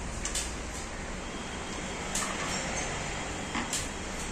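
Steady background hiss with three short clicks and knocks of metal parts being handled as a monitor stand's VESA mounting plate is fitted onto its arm.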